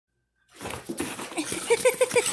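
A French bulldog and a Labrador-type dog starting a play fight, with short repeated play-growls coming faster toward the end. The sound begins about half a second in.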